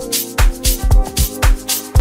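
Deep soulful house music from a DJ mix: a steady kick-drum beat with crisp high percussion strokes over held chords.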